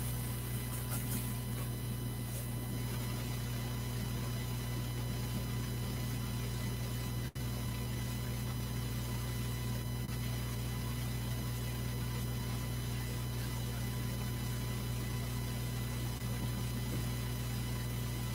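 Steady electrical hum with a set of faint, constant high whines above it, unchanging throughout; the sound drops out for an instant about seven seconds in.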